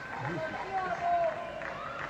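Voices of people calling out and half-singing from balconies across the street, over a faint crowd hubbub.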